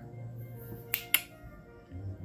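Fingers snapped twice in quick succession, two sharp clicks about a fifth of a second apart a second in, over soft, sustained background music.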